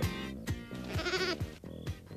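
A single wavering goat bleat about a second in, over background music with a steady beat.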